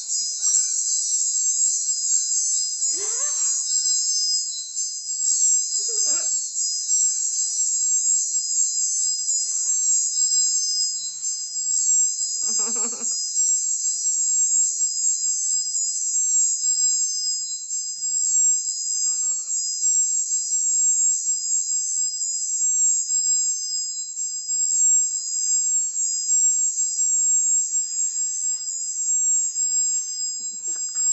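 A steady high-pitched hiss with several thin whining tones in it runs throughout. A few brief wordless vocal sounds break through it: short ones about three and six seconds in, and a longer one about thirteen seconds in.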